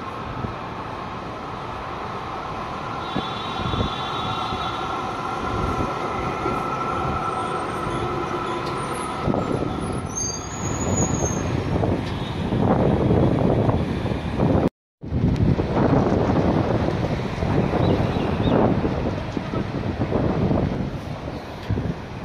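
Melbourne trams on street track. First a tram approaches with a steady high whine, then from about nine seconds in a tram rolls past close by over the rails, louder and rougher. The sound cuts out completely for a moment about fifteen seconds in.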